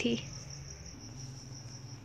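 Quiet background between spoken sentences: a steady, faint, high-pitched whine over a low hum, with the end of a spoken word right at the start.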